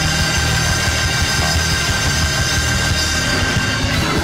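Loud live worship music in a church: held chords over a steady bass line, with drums striking throughout.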